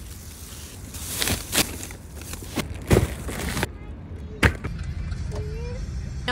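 Plastic grocery bags being loaded from a shopping cart into a car's trunk: bags rustling, with several knocks and thuds of goods set down, the loudest about three seconds in. About a second later comes one sharp click.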